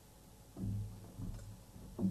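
A few soft, low bass notes played singly with gaps between them. The first comes about half a second in and the loudest right at the end.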